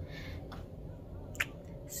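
Low steady room hum with one short, sharp click about one and a half seconds in.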